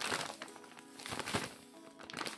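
A plastic zip-lock bag of sand crinkling as it is handled, loudest in a burst right at the start and briefly again around the middle, over soft background music.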